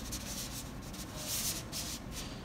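Planchette sliding across a spirit board under the fingertips: a soft, continuous scraping rub.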